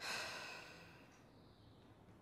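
A woman's breathy sigh, starting abruptly and fading away over about a second.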